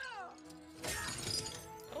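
Cartoon soundtrack: a steady held note of score music with a loud crash and shattering of breaking debris about a second in, lasting under a second.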